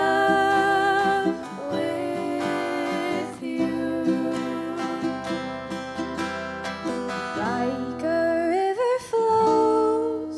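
A ukulele and an acoustic guitar played together while a woman sings long, wavering held notes.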